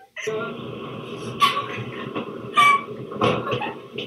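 Steady rumble and hiss of a moving train heard from inside the carriage, starting abruptly a moment in, with a few short, loud voices over it.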